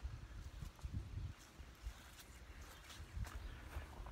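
Faint footsteps on grass, a few soft irregular steps, over a low rumble of handling noise on the phone's microphone.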